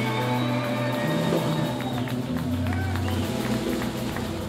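Live electric blues band letting a song ring out: electric guitar and bass guitar hold and bend sustained notes, the bass stepping between a few long low notes, with no drum beat.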